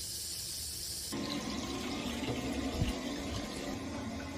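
Tap water running into a bathtub as it fills, a steady rush that turns from a thin hiss into a fuller, deeper pour about a second in.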